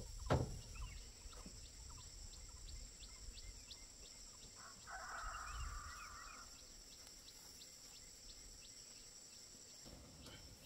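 A single sharp knock near the start as a man pulls down on and lets go of a bamboo roof frame, then a bird call about a second and a half long around five seconds in, over a steady high insect buzz.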